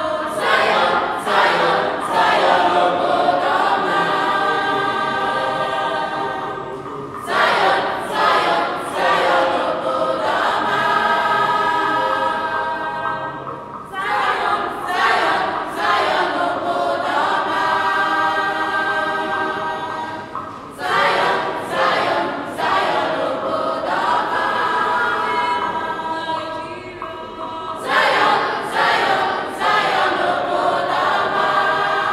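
Mixed school choir of boys' and girls' voices singing an Igbo song together, in long phrases that start afresh about every seven seconds.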